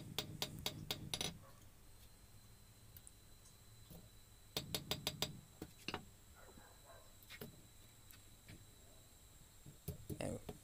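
Hand hammer striking a car-spring steel bar on an anvil: a quick run of about seven blows at the start, another run of about six a few seconds later, then a couple of single strikes near the end.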